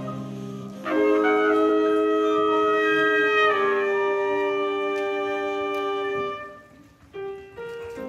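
A school chamber wind ensemble of flute, clarinet, saxophones and low brass is playing. About a second in it comes in loud on a held chord, which shifts once and then dies away near six seconds. A brief gap follows, then a few short detached notes.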